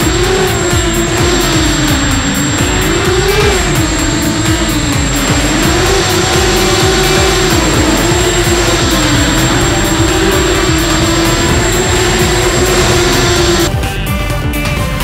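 Racing quadcopter's brushless motors and propellers whining, the pitch rising and falling with throttle changes, over background music. The whine cuts off just before the end.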